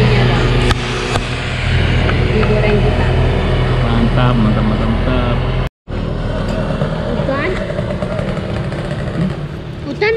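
A motor vehicle's engine runs steadily, with voices in the background. The sound cuts out for an instant about six seconds in, and the engine hum is weaker afterwards.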